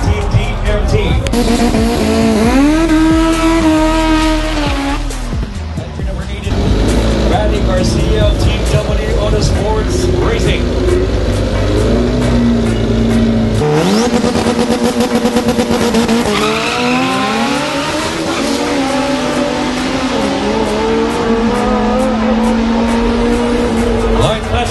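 Drag race car engines revving at the starting line. The pitch rises, holds and falls several times, then is held steady for a long stretch in the second half, with tyre squeal. Music plays underneath.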